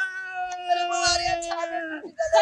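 Long, drawn-out human wailing held at a steady pitch, with a second voice overlapping it.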